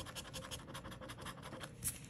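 A coin scraping the latex coating off a scratch-off lottery ticket in rapid short strokes, about eight to ten a second, with one louder scrape near the end.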